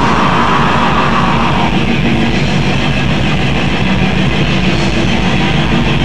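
Black metal band playing live: a dense wall of distorted guitar over fast, even drumming, with a high held note for the first second and a half.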